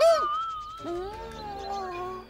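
A man's long wordless voiced sound from a cartoon character, in two held notes: the first slides down, and the second, starting about a second in, is lower and steady. Faint short chirps sound high in the background near the end.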